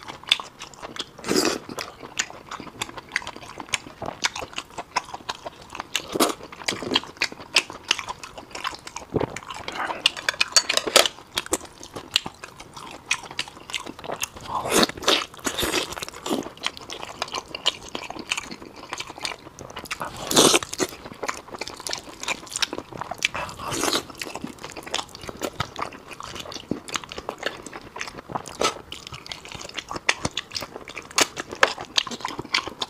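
A person biting and chewing saucy braised meat on the bone, close to a clip-on microphone: irregular wet smacking and chewing, with a few louder bites.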